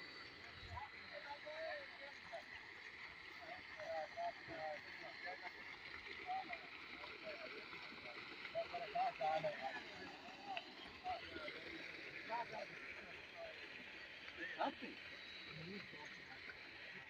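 Faint, indistinct men's voices talking at a distance over a steady outdoor hiss, with a single sharp knock near the end.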